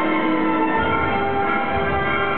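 Live orchestra playing, with held notes sounding at several pitches at once and a low pulsing beat that comes in about a second in.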